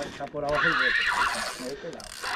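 A man's wordless voice, wavering up and down in pitch, with no words made out.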